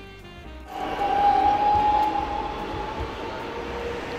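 Street traffic noise that starts suddenly less than a second in, carrying the steady whine of a tram's electric motors, which sinks slightly in pitch, with a second lower tone joining about halfway.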